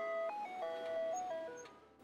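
Ice cream truck jingle: a simple electronic chime tune of single held notes stepping up and down, fading out near the end.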